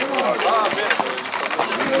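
Several people's voices shouting and calling over a rapid clatter of horses' hooves on asphalt as a group of riders gallops along.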